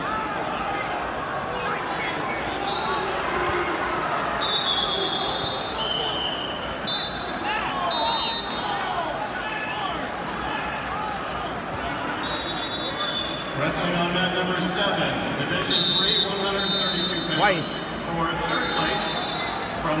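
Wrestling-tournament crowd in a large echoing arena: a steady din of many voices, with spectators and coaches shouting. From about three seconds in, a series of brief, high, steady tones cuts through it.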